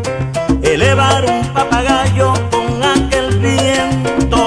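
Salsa music: an instrumental passage in which horns play wavering melodic lines over a repeating bass pattern and percussion.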